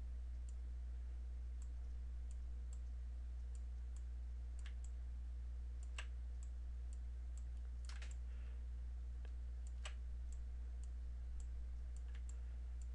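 Computer mouse buttons clicking at irregular intervals, a few clicks louder than the rest, over a steady low electrical hum.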